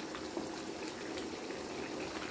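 A pan of sauce simmering on the stove: small bubbles pop irregularly over a steady low hiss.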